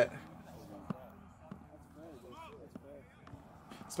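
Faint field sound from a rugby sevens match: distant players' voices calling across the pitch over a low outdoor hiss, with one sharp knock about a second in.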